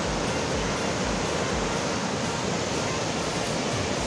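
A rocky river waterfall in spate: swollen, muddy floodwater rushing over boulders in a steady, even noise of falling water.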